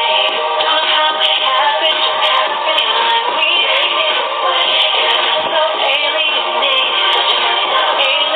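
A song playing: music with a sung vocal line that runs on without a break.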